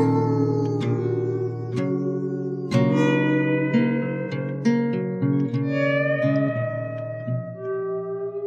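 Instrumental passage of a song: plucked guitar notes struck one after another and left to ring, over steady low sustained notes, with a few notes gliding slightly in pitch.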